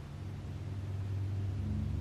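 A low, steady rumbling hum made of a few deep tones, growing gradually louder, with a slightly higher tone joining near the end.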